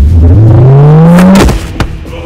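Edited superpower blast sound effect: a loud charge-up tone rising steadily in pitch for about a second and a half, ending in a sudden crack, then a short snap just after.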